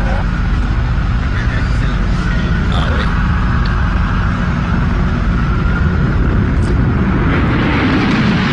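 City street sound from news footage: a heavy low rumble with a long high wailing tone running through it, and people's voices calling out.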